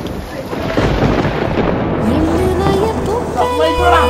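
A loud rush of heavy rain with a thunder-like rumble that swells in the first half. A voice and then music with a steady bass come in during the second half.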